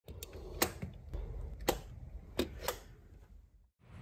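A handful of sharp, irregular clicks over a low rumble, fading out shortly before the end.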